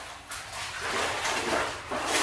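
A dog close to the microphone making a quick run of breathy, noisy sounds a few times a second, with no clear bark.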